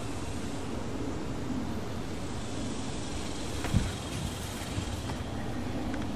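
Steady low outdoor background rumble, with one sharp click about four seconds in.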